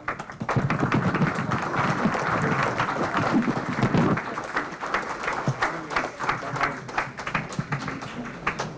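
Audience applauding: many hands clapping at once, with a few voices mixed in.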